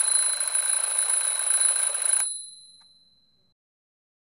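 Red twin-bell alarm clock ringing, a rapid metallic rattle of the bells. It stops abruptly about two seconds in, and the bells ring on and fade away over the next second or so.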